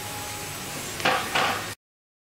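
Steady room hiss, then two short noises just after a second in, and the sound cuts off abruptly to dead silence near the end.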